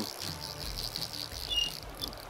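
Insects chirping by the riverbank: a steady, high, finely pulsing trill, with a brief higher chirp about one and a half seconds in.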